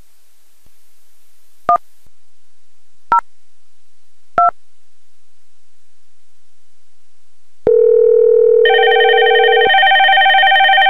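X-Lite softphone keypad tones: three short two-tone beeps for the digits 1, 0, 2, spaced about a second and a half apart. About seven and a half seconds in, a steady low call-progress tone starts as the call to extension 102 goes out, and about a second later a higher, multi-tone phone ring joins it.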